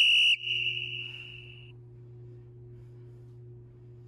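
A single high-pitched electronic beep with a sharp start, loud for about a third of a second, then trailing off and gone by about a second and a half in. After it there is only quiet room tone with a low steady hum.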